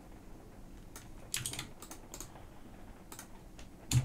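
Typing on a computer keyboard: a run of irregular keystrokes starting about a second in, with the loudest stroke near the end.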